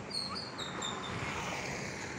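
A small bird chirping: a quick run of about five short, high notes stepping down in pitch within the first second. Behind it is a steady, even background hiss.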